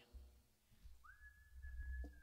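A single high, steady whistling tone begins about a second in with a quick upward glide and is then held. Beneath it are low rumbling bumps from the acoustic guitar being handled and taken off.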